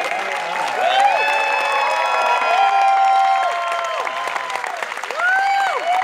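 An audience applauding, with several people whooping and cheering over the clapping.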